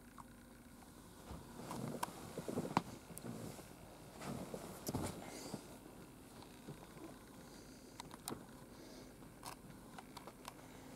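Handheld camera handling noise: rustling and irregular light knocks and clicks as the camera is moved against a curtain and window frame, busiest in the first half and thinning to a few sharp clicks later.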